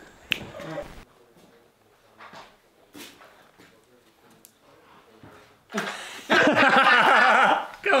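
A man's long, loud yell with a wavering pitch, about six seconds in, after a quiet stretch with a few faint clicks.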